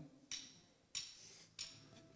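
Drummer's count-in: three faint, evenly spaced high ticks about two-thirds of a second apart, setting the tempo for the band.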